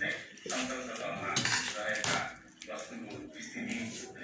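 A spoon scraping and clinking against a metal plate during a meal, with voices talking.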